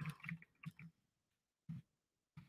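Faint typing on a computer keyboard: a quick run of keystrokes in the first second, then a single keystroke near the end.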